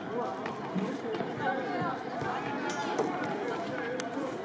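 Players shouting and calling out across an open football pitch, several distant voices overlapping without clear words.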